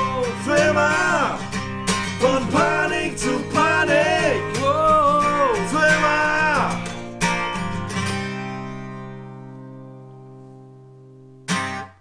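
Acoustic guitar strummed under a man's singing with long held notes. About seven seconds in the playing stops on a final chord that rings out and fades away over about four seconds. A brief noise comes just before the end.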